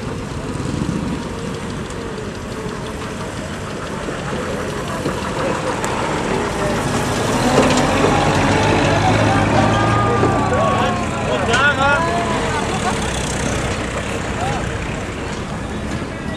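Engine of a WWII US Army cargo truck running as it drives slowly past, loudest as it goes by close about eight seconds in, with the vehicles following it in the convoy. Voices call out in the middle.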